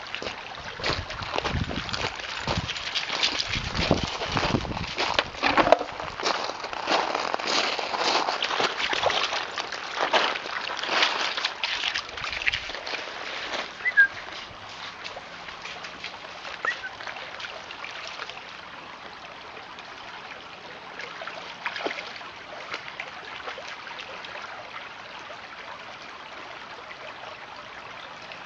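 A dog splashing as it wades through a shallow, pebbly creek, over the trickle of running water. The splashing dies down about halfway through, leaving the steady trickle of the stream.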